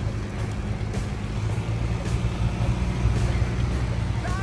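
Steady low hum of a running motor vehicle engine over an even rushing noise, growing a little louder toward the end.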